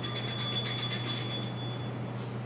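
Altar bells shaken in a quick jingle for about a second and a half, then ringing out, sounded as the priest drinks from the chalice at communion. A steady low hum runs underneath.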